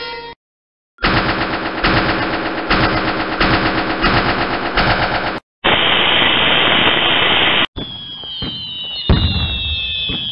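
A string of intro sound effects. After a brief silence comes about four seconds of rapid rattling like machine-gun fire, then about two seconds of TV static hiss that cuts off suddenly. Then come fireworks: falling whistles with scattered booms.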